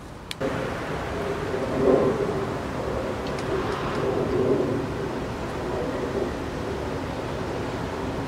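Steady rushing outdoor noise that cuts in abruptly about half a second in and stops abruptly at the end.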